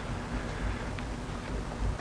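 Quiet room tone with a low, uneven rumble and a faint click about a second in; the shop vac is not running.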